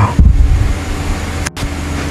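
Steady rushing background noise, with a low thump just after the start and a brief dropout about one and a half seconds in.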